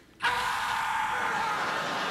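A theatre audience bursts into loud laughter and applause after a punchline, starting abruptly about a quarter of a second in and holding steady.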